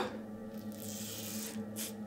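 Double-edge safety razor, a Yates Titanium 921-M, scraping through lathered stubble on the jaw: a quiet rasping hiss, with a short sharper scrape near the end.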